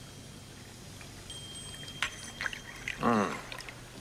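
Sake being poured from a small ceramic flask into small cups held out for it, with a few light clicks of ceramic from about two seconds in and a louder, brief sound of the pour about three seconds in.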